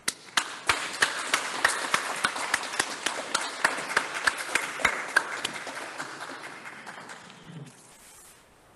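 Applause, with one person's hand claps close to the microphone standing out as sharp, evenly repeated claps over the others. It fades gradually and has died away by about seven seconds in.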